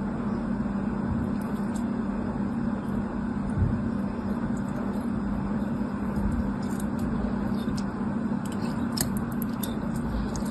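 A craft knife cutting and prying apart a clear, wet soap ball, with faint scattered clicks and crackles that come thicker near the end, over a steady low hum.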